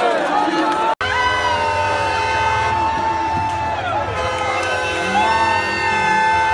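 A celebrating crowd shouting. After a cut about a second in, a loud held horn note runs for about three seconds over the crowd, slides down in pitch, and sounds again about a second later.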